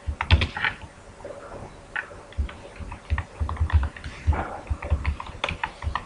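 Computer keyboard being typed on: an irregular run of key clicks, a few strokes, a pause of about a second, then a longer quick run of keystrokes.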